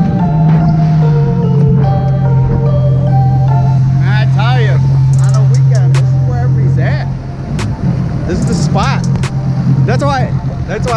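Background music with a mallet-percussion melody over the steady drone of a Sea-Doo RXT-X 300 jet ski engine cruising; the drone steps in pitch twice near the start. The music drops away about seven seconds in, and a voice is heard over the engine.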